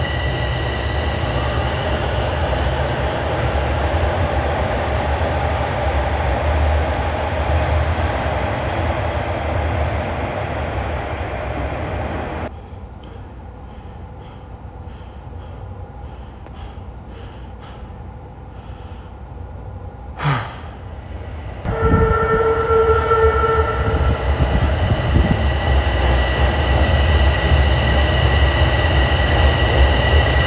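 Subway train running, a low rumble under a steady whine, cut off suddenly about twelve seconds in to a quieter platform hush with faint ticks. About twenty-two seconds in the train rumble returns loudly with a steady two-second tone, then a train moving past the platform with the same rumble and whine.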